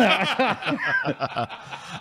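Men laughing: chuckling in quick short bursts, loudest at the start and trailing off in the second half.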